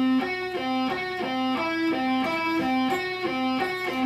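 Electric guitar played with alternate picking in a slow string-crossing exercise, single notes about three a second. Higher notes on the G string alternate with a repeated low C on the D string's 10th fret, the upper note shifting partway through.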